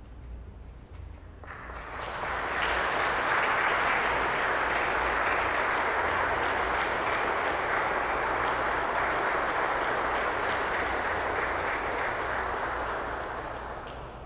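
Audience applauding in a large, reverberant cathedral. The applause starts about a second and a half in, holds steady, and dies away near the end.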